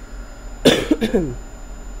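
A person coughs once, a sudden loud burst about two-thirds of a second in, trailing off in a short falling voiced sound.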